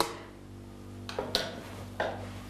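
Two light clicks of a wooden spoon against a plastic jug of lye as it is stirred, a little past a second in, over a faint steady hum.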